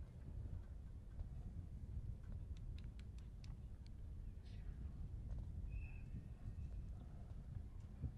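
Faint outdoor ambience: a low, steady rumble like wind on the microphone, with a few faint ticks a few seconds in and one brief high steady note near the middle.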